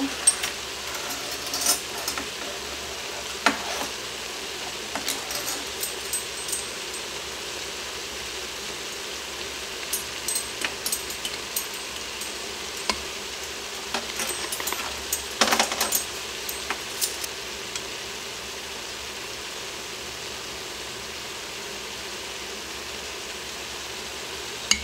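Ground beef, onion and bell pepper sizzling steadily in an Instant Pot on sauté, with scattered clinks and taps of a measuring spoon and spice jar as Italian seasoning is added, busiest from about ten to seventeen seconds in.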